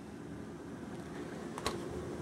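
Low, steady hum of a Coleman roof air conditioner running inside a travel trailer, with a single sharp click about one and a half seconds in.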